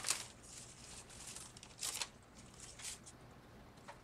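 Leafy tomato stems and foliage rustling as they are handled, in a few brief rustles: one at the start, one about two seconds in and one about three seconds in.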